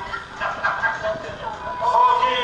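A man's voice through a handheld microphone and PA, sliding up and down in pitch; near the end it settles into a held sung note.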